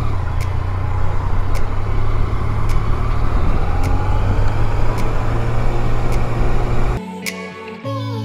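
Yamaha Tracer 900's three-cylinder engine running as the bike rides off at low speed, with wind on the microphone and a music track's steady beat faintly underneath. About seven seconds in the engine sound cuts out and only the music, with acoustic guitar, is left.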